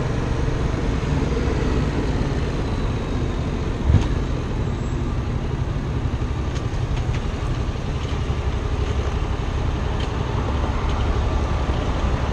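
Yamaha FZ-07's parallel-twin engine idling steadily at a standstill, with traffic around it. A single short knock about four seconds in.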